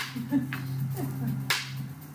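Wooden Kali fighting sticks striking each other in a double-stick partner drill: a sharp clack at the start and another about a second and a half later, with a short laugh just after the first.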